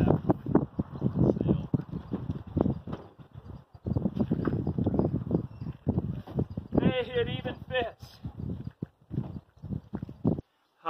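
Footsteps in snow and irregular knocks and thuds as a wooden cold frame with a plastic roof is carried and set down onto the timber sides of a raised bed. A brief voice sounds about seven seconds in.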